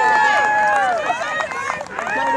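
Several high-pitched young voices shouting and calling out together, overlapping. One long drawn-out call fades about a second in, and shorter shouts follow.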